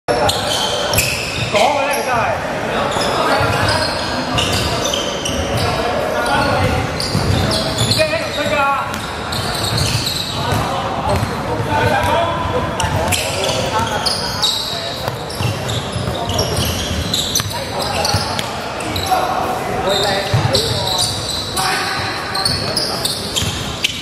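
Basketball game on a hardwood court: the ball being dribbled and bouncing, with players' indistinct calls, all echoing in a large hall.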